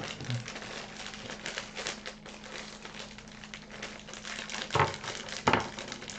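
Foil blind-bag packet crinkling as it is handled and opened, a steady crackle of small crinkles, with two sharper clicks near the end.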